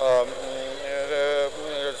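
A man's voice holding a long, drawn-out hesitation sound mid-sentence, at a nearly steady pitch. A faint steady high whine runs underneath.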